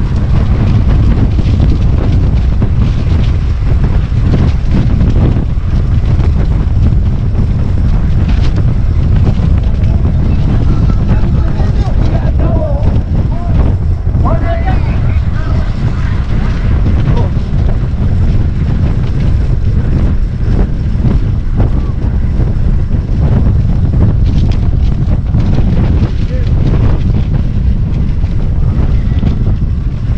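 Wind buffeting the camera's microphone as a track bike is ridden at racing speed, a loud, steady rumble. About halfway through, a voice briefly calls out over it.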